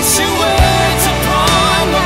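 Worship rock song by a full band with electric guitar and drums, a kick drum landing about half a second in. A sung vocal line slides over the band with no clear words.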